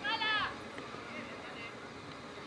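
A single high-pitched shout of about half a second right at the start, rising and then falling in pitch, followed by faint calls and voices from the pitch.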